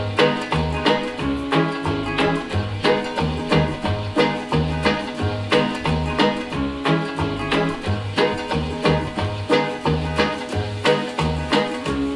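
A song playing through home-built mini-monitor loudspeakers fitted with Dayton DSA135 aluminium-cone woofers, picked up by a microphone in the room. It starts abruptly and has a steady beat and a pulsing bass line.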